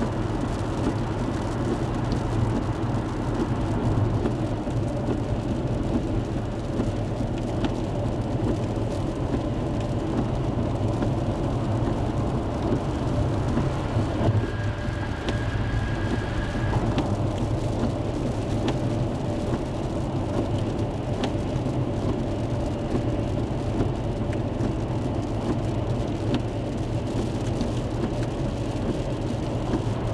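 Steady road and engine noise inside a vehicle cabin at highway speed in rain, a continuous low rumble and hiss. About halfway through, a faint high steady tone sounds for a couple of seconds.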